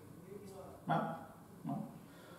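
Speech only: a man's short questioning "No?" and another brief syllable, with quiet room tone in between.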